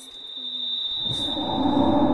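Electric fan blowing hard at close range: a low hum with rushing air that swells from about a second in, over a steady high-pitched tone that fades out partway through.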